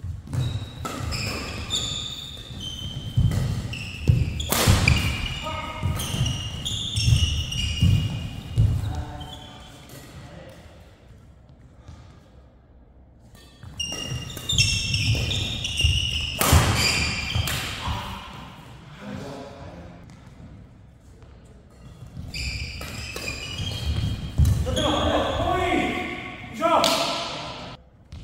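Badminton doubles rallies: rackets hitting the shuttlecock, shoes squeaking and feet thudding on the court floor, echoing in a hall. The play comes in three spells with quieter gaps between points.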